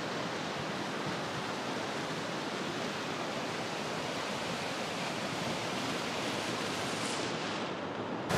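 Steady rush of water as the stream of Waipoʻo Falls pours over a rocky lip at the top of the falls.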